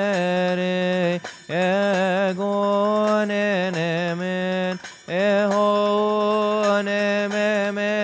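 A male voice chanting a slow, melismatic Coptic liturgical hymn, holding long notes with ornamented wavers and pausing briefly for breath about a second in and again about five seconds in. Faint light strikes sound about once a second behind the voice.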